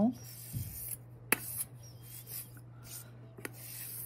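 A blade scraping and rubbing liquid polymer clay off a metal dome form: faint, scattered scratching with two short sharp clicks, about a second in and again near the end.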